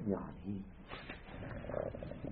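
A man's voice hesitating between phrases: a trailing "uh" and a short murmur, then a faint breath and a low throaty rasp, all much quieter than the speech around it.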